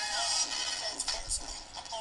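A song playing back from Audacity after a bass boost at 150 Hz, heard through a laptop's speakers with a thin sound and hardly any low bass.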